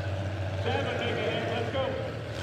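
Demolition derby car engines running with a steady low drone. About half a second in, a voice calls out over them for roughly a second.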